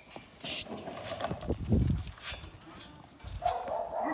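Dairy sheep milling in a metal pen, with scattered knocks and shuffling, and a sheep bleating with a wavering call in the last half-second or so.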